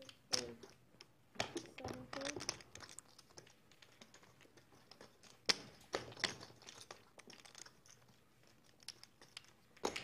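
Poker chips clicking irregularly as players handle their stacks at the table, with faint voices murmuring in between.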